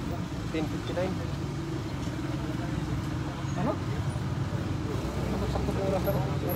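Steady low hum of an idling engine, with faint voices talking in the background.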